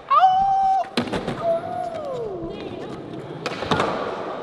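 A loud yell, then a sharp clack of a skateboard hitting the concrete floor about a second in, followed by a long falling vocal 'ohh'. Near the end comes a quick cluster of skateboard clacks on concrete.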